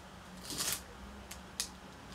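Folding hand fans being handled and flicked open: a soft rustle, then two short clicks about a third of a second apart.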